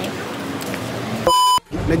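Faint street background noise, then a short, steady, high electronic beep of about a quarter second about 1.3 s in, cut off by a brief dropout to silence.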